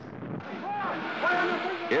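A voice speaking indistinctly over a steady rushing noise, part of a film soundtrack.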